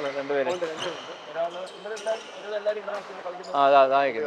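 Sharp, irregular hits of badminton rackets striking shuttlecocks, roughly every half second, under quiet, indistinct talk.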